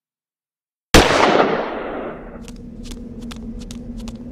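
A sudden loud bang breaks a dead silence about a second in, its noisy crash dying away over about a second. A steady hum remains, with a series of sharp clicks about two or three a second.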